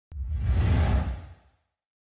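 Logo-reveal sound effect: a sharp hit, then a whoosh with a deep rumble under it that swells and fades away by about a second and a half in.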